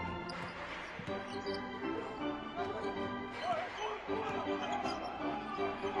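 A basketball bouncing on a hardwood court during live play, a few scattered knocks, over steady background music in the arena.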